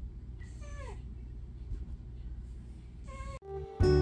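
A calico cat meows twice. The first is a drawn-out meow falling in pitch about half a second in; the second is shorter, about three seconds in. Acoustic guitar music starts just before the end.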